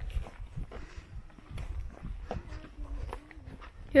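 Footsteps on a dirt trail, irregular short steps over a low rumble.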